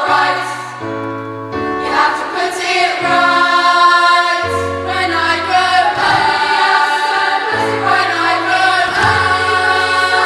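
Girls' choir singing together over an accompaniment whose low bass notes are held and change every second or two.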